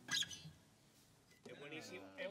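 The last acoustic-guitar and piano notes die away, cut by a short, sharp, high-pitched sound about a quarter second in. A person starts talking about a second and a half in.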